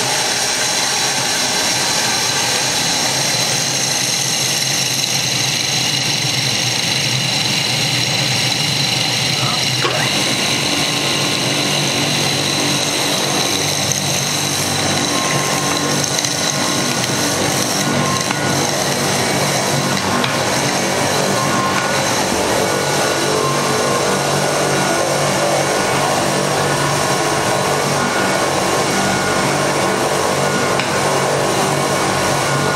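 Commercial vertical cutter (robot coupe) running steadily with a high motor whine, coarsely grinding caramelized almonds for praliné. About ten seconds in, a deeper, rougher grinding sound joins the whine and carries on.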